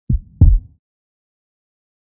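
One heartbeat, a low 'lub-dub' of two thumps about a third of a second apart near the start, the second louder.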